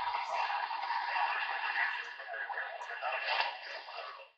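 CB base station radio's speaker putting out steady static, with faint garbled voices coming in on skip. The sound is thin and tinny, with no bass.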